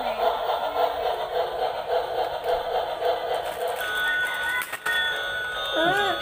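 Electronic music with a regular pulsing beat, changing about four seconds in to steadier, held high tones.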